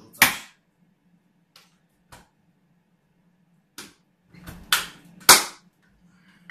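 Plastic latch clips on an Aquael Unimax 250 canister filter being snapped, a series of about six sharp clicks, loudest about a quarter second in and again near the end.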